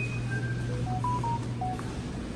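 A run of short, pure electronic tones at changing pitches, one after another like a simple beeping melody, over a steady low hum.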